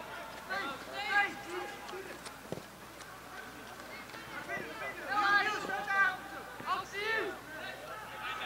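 Raised voices of youth football players shouting and calling out across the pitch in short bursts, loudest around five to seven seconds in. A single knock sounds about two and a half seconds in.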